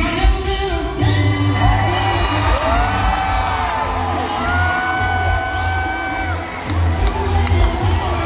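Male a cappella vocal group singing live, with a deep, steady bass voice under sustained harmonies and sliding vocal lines, while the audience whoops and cheers over the singing.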